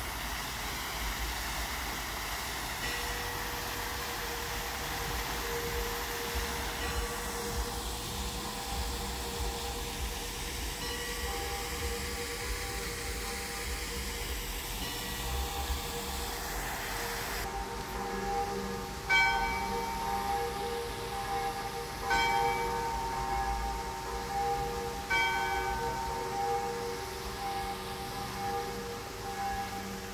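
Bells ringing: faint, evenly spaced strikes with lingering tones, growing louder in the second half with strikes about three seconds apart, over steady low background noise.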